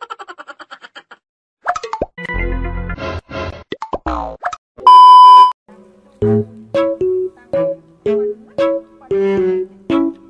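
Edited-in comedy sound effects followed by music: a quick run of short cartoon effects, then a loud, steady beep lasting about half a second roughly halfway through, then a light, bouncy tune of short plucked notes.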